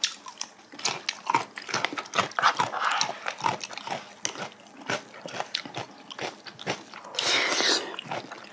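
Close-miked eating sounds: soft wet chewing and small clicks of spoon and chopsticks on bowls, with a short louder slurp near the end as food is taken off a spoon.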